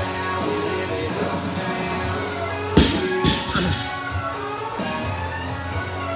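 Rock music with guitar playing throughout. About three seconds in, a loaded barbell with bumper plates is dropped onto the rubber floor, landing with a sharp impact and a second one half a second later as it bounces.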